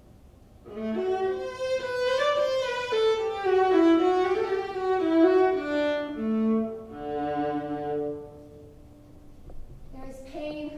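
Solo violin playing a short phrase of moving notes, starting about a second in and ending on a long held note about eight seconds in.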